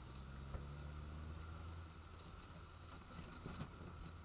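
Rover Mini's four-cylinder engine running under way, heard from inside the small cabin as a low steady drone with road noise, its note a little stronger in the first second and a half. A few faint knocks come through, about half a second in and again near the end.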